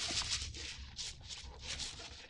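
Faint, repeated rattling of Osmocote time-release fertilizer granules being shaken out of a container's perforated shaker cap, a handful of short shakes with a sharper click at the start.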